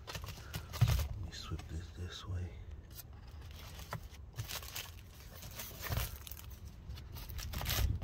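Plastic wrapping crinkling and tearing as a new cabin air filter is unwrapped and handled, with a few soft thumps of the filter frame being set down.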